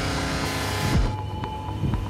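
Trailer score and sound design: a loud, dense swell that cuts off about a second in, leaving a low rumble under a held tone.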